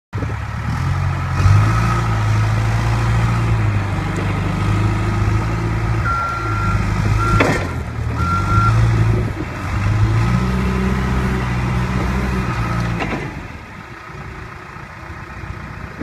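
John Deere 310SG backhoe loader's four-cylinder diesel engine running as the machine is driven, its speed rising and falling. Its reverse alarm beeps three times near the middle. The engine drops to a quieter idle for the last couple of seconds.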